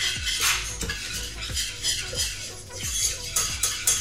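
A metal whisk scraping and clinking against the inside of a stainless steel saucepan, in quick, irregular strokes several times a second, as flour is whisked into melted butter to cook a roux.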